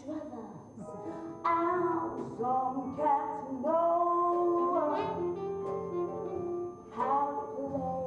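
Woman singing a musical-theatre number with instrumental accompaniment, holding long notes.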